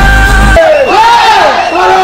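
Music with a heavy bass cuts off about half a second in. A large crowd of marching students then takes over, shouting together in loud, overlapping calls that rise and fall.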